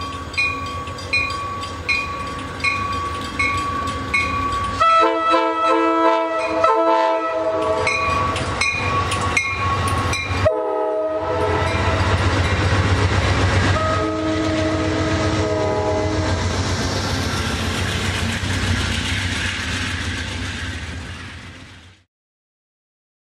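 Amtrak train's bell ringing steadily, then its horn sounding long, long, short, long as the train passes close by. Wheels and engine rumble loudly, then fade away near the end.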